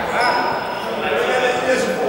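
Several young people talking over one another in a large gym hall, their voices echoing. A brief high-pitched squeak comes shortly after the start.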